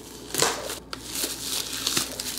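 Clear plastic shrink wrap being peeled off a boxed album and crumpled in the hand, crinkling and crackling, with a sharper crackle about half a second in.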